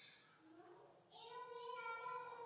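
A faint, distant high-pitched voice holds one long, slightly wavering note, starting about a second in.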